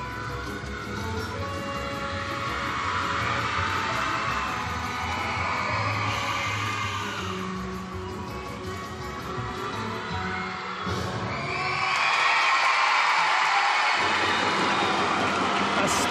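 Accompaniment music for a rhythmic gymnastics ball routine plays and stops about eleven seconds in. The arena crowd then cheers and applauds, louder than the music was.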